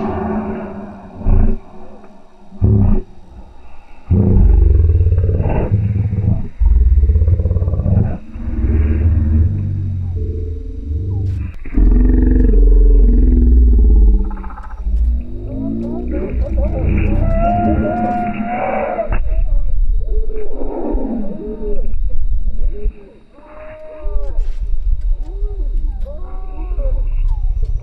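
Harris's hawk calls played in slow motion: a series of low, drawn-out calls that sound like a dinosaur, with short breaks between them.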